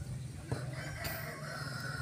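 A rooster crowing once, one long call that starts about half a second in, over a steady low hum.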